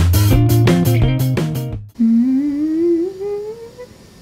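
Outro music with plucked guitar and a steady beat that cuts off about two seconds in. A person then hums one long note that rises slowly in pitch and fades away.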